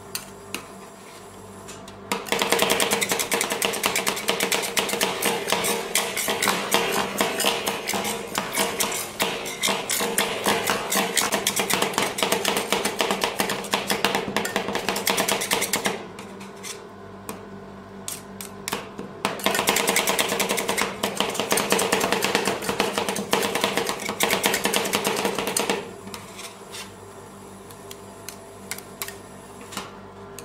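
Two metal spatulas rapidly chopping pomegranate ice-cream mix on a stainless steel ice-roll cold plate, in a fast clatter of blade strikes on metal. It starts about two seconds in and runs to about halfway, gives way to a few scattered knocks and scrapes, then comes back for a second fast burst that stops a few seconds before the end.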